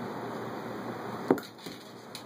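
A golf iron striking a golf ball: one sharp click about a second and a quarter in, followed by a couple of fainter clicks.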